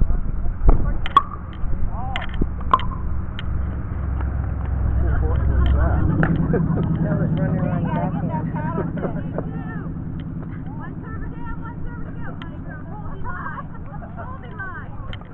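A motor vehicle passing by: a low engine hum builds about four seconds in, is loudest a couple of seconds later, then slowly fades. A few sharp knocks come in the first three seconds, and faint voices sound throughout.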